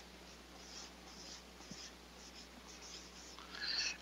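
Dry-erase marker writing on a whiteboard: a string of short, faint strokes, louder near the end.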